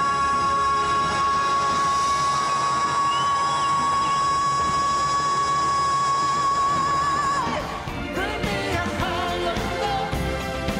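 A female pop singer holds one long, high belted note over orchestral accompaniment for about seven and a half seconds, with vibrato near the end. The music then cuts to a male singer with a band.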